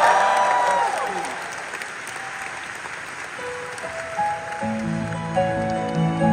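Concert audience cheering and applauding, the applause dying away over the first few seconds. A grand piano then comes in softly with a couple of single notes, and about three-quarters of the way through settles into slow sustained chords, the start of a ballad's introduction.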